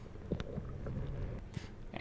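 Quiet underwater ambience picked up by a diving camera: a steady, muffled low rumble, with a couple of faint clicks.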